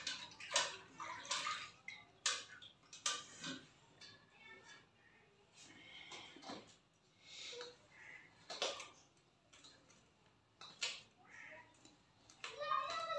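Hands working dough: scattered soft rustles, scrapes and wet splashes of hands in a steel bucket and on a steel tray, coming irregularly every second or two.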